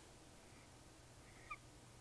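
Near silence: room tone, with one brief faint squeak of a dry-erase marker on a whiteboard about one and a half seconds in.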